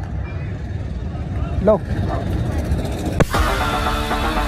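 A low steady rumble with a brief vocal sound about halfway through. A sharp click follows about three seconds in, and background music starts right after it.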